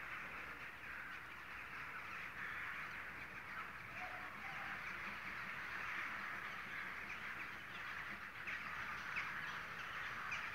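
Faint, steady outdoor ambience with distant crows cawing.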